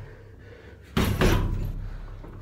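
One hard gloved punch landing on a hanging heavy punching bag about a second in: a single deep thud that rings on briefly in the room.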